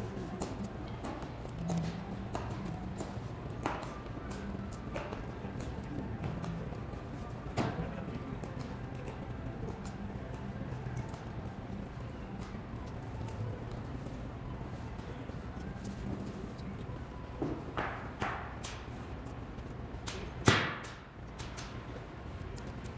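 Sharp heel strikes of honor guards' boots on a marble floor, echoing in a large stone hall over a low steady background. The strikes come singly and in a quick cluster near the end, the loudest about twenty seconds in, with a ringing tail.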